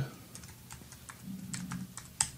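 Typing on a computer keyboard: a quick run of light key clicks.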